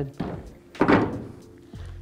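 A single dull knock of hard plastic about a second in, as the taillight assembly and its bulb sockets are handled, with steady background music underneath.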